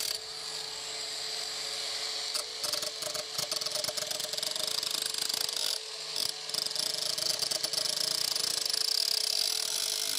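Parkside Performance PWSAP 20-Li B2 cordless angle grinder with a brushless motor, running with a steady whine while its disc grinds against the edge of a steel blade, with a rasping crackle that thickens about two and a half seconds in.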